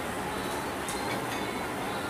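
Steady rumbling background noise, with two faint clicks about a second in.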